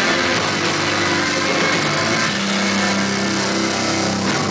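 Live rock band in an instrumental passage: loud distorted electric guitar in a dense, steady wall of noise over held low notes, with a new low note coming in about two-thirds of the way through.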